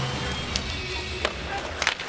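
Ice hockey arena game sound: a few sharp clacks of sticks and puck on the ice, about three across two seconds, over faint music and the low rumble of the rink.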